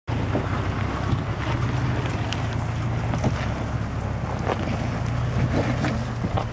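Jeep Cherokee engine running low and steady as the SUV crawls over a rocky trail, with scattered clicks and knocks of tyres rolling over stones.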